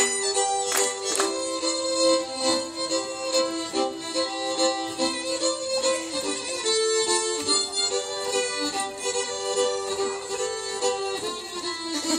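A live ensemble of fiddles playing a lively Swedish folk dance tune, with a few sharp knocks in the first second or so.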